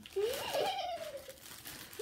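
Plastic bags crinkling as fabric pieces are handled, with a short sound sliding up and then down in pitch during the first second.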